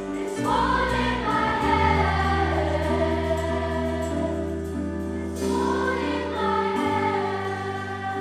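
Massed choir of school students singing with band accompaniment of grand piano, guitars and bass: two long sung phrases, the first falling in pitch, over a held bass note.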